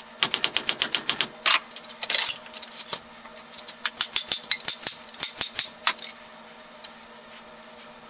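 Dead blow hammer tapping in quick light blows, about ten a second, in two runs with a couple of single blows between, driving a hickory handle into the eye of a 12 lb sledge hammer head.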